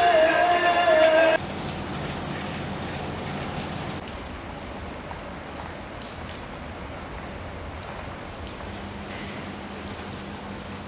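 Music stops abruptly just over a second in, leaving the steady hiss of rain falling.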